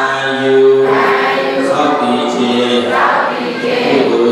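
A group of voices chanting a Buddhist blessing in unison on slow, long-held notes, the chant that goes with the water-pouring rite of sharing merit.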